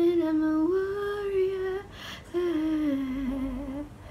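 A woman singing unaccompanied, holding two long notes with a short breath between them about two seconds in; the second note sinks slowly in pitch.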